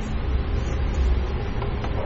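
Steady low rumble with an even hiss of room noise, with no distinct events, typical of a classroom's ventilation hum.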